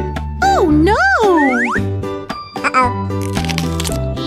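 Children's background music with a steady bass line, overlaid with cartoon sound effects: loud swooping boing-like pitch glides that rise and fall, about half a second in, then a few quick upward sweeps.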